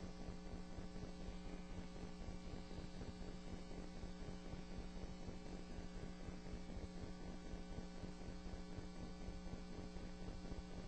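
Steady electrical mains hum with a faint hiss on a courtroom audio feed.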